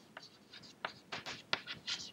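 Chalk writing on a chalkboard: a string of short, faint scratching strokes as a word is written.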